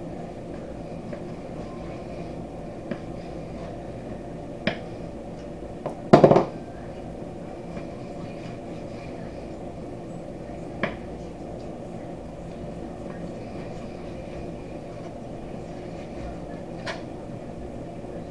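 Knife slicing raw pork on a wooden cutting board, with a few sharp taps of the blade on the board, the loudest about six seconds in, over a steady background hum.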